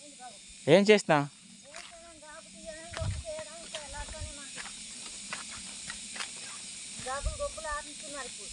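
Small hand hoe striking and scraping the soil between turmeric plants during weeding, about one short stroke a second, over a steady hiss. A voice sounds briefly about a second in.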